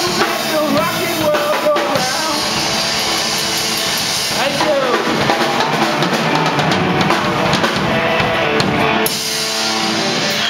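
A small rock band playing live: a Gretsch drum kit, electric guitar and bass guitar, with a singer on a microphone.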